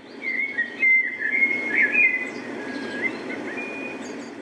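A whistled tune of held notes joined by short slides, over a steady low rushing noise.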